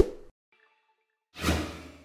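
Sound effects of a TV logo animation: a sharp hit at the very start that dies away within a fraction of a second, then a whoosh about a second and a half in that fades out.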